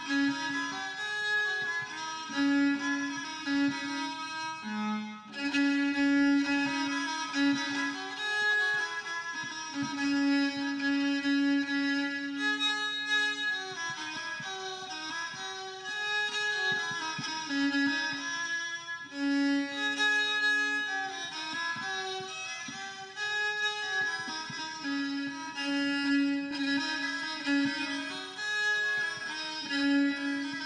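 Solo violin, the hand-made golden-spiral violin, bowed. It plays a slow melody that keeps returning to the same low held note.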